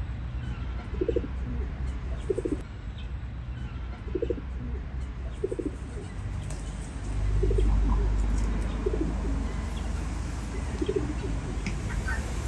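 Feral rock pigeons cooing: about seven short, low coos spaced one to two seconds apart, with a low rumble swelling up about seven seconds in.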